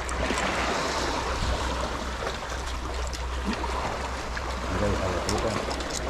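Sea water washing and sloshing in the gaps between the concrete blocks of a breakwater, a steady rushing, with a low rumble underneath.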